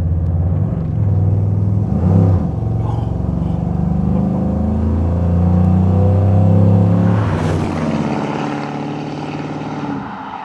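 A 6.2 litre LS3 V8 pulling hard under spirited acceleration, heard from inside the car's cabin. The engine sound is loudest around six to seven seconds in and eases off after about eight seconds.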